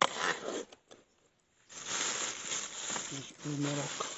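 A rustling noise lasting about a second and a half, followed by a short spoken sound.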